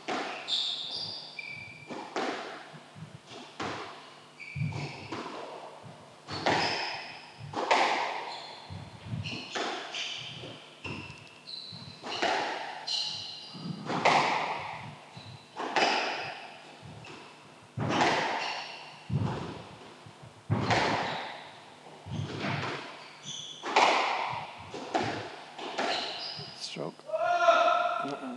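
Squash rally: the ball is struck by rackets and hits the court walls, making sharp, echoing thwacks about once a second, with shoes squeaking on the wooden floor between shots. Near the end a player screams out in frustration after losing the rally.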